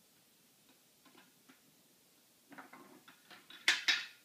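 Wooden activity cube being handled: light clicks and clacks of wooden pieces knocking together. A few faint ones come about a second in, then a quicker run, ending in two sharp, louder clacks near the end.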